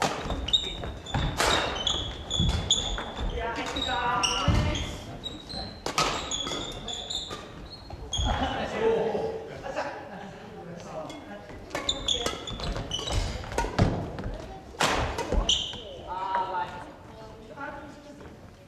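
Badminton doubles rally on a wooden gym floor: sharp racket strikes on the shuttlecock and footfalls, with short high squeaks of court shoes, echoing in a large hall. Players' voices call out now and then.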